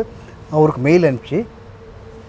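A man speaking a few words in the middle of a pause in his talk, with a faint, steady, even hum underneath that is heard on its own in the gaps before and after.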